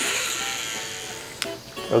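A fishing rod being cast: fishing line hisses off the reel as the lure flies out, starting suddenly and fading away over about a second and a half, then a single click. Guitar background music plays underneath.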